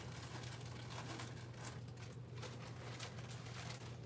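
Quiet room tone: a steady low hum with faint rustling and handling noises.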